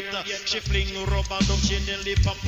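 Reggae dancehall riddim played on a sound system, a heavy pulsing bass line under the beat, with a deejay chanting over it.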